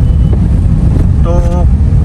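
Steady low rumble of a Tata Nano's small rear-mounted two-cylinder petrol engine and road noise while driving, heard from inside the cabin.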